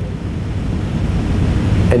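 Steady low rumble of background room noise, strongest in the bass, with no speech until a single word right at the end.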